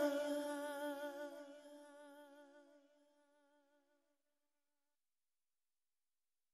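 The song's final held note, wavering with vibrato, fades out over the first second or two and dies away, leaving silence.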